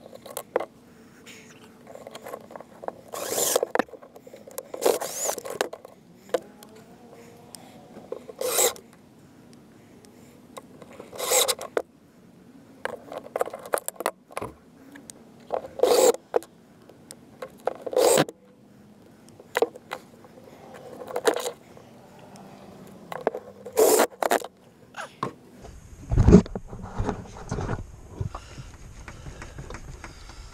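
Cordless drill driving screws into a plywood floor in short bursts, about eight of them, with scraping and handling between. Near the end comes a heavy low thump and rumble.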